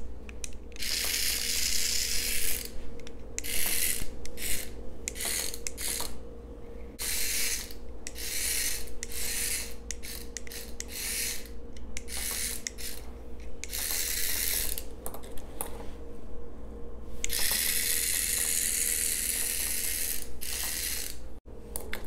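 Remote-controlled toy cockroach's small motor whirring in short spurts of a second or two, with brief pauses between, and one longer run of about three seconds near the end. The runs stay short because the toy won't run continuously and stops on its own after about a foot.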